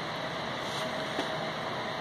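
Steady mechanical hum with a faint thin whine held on one pitch, the sound of running machinery.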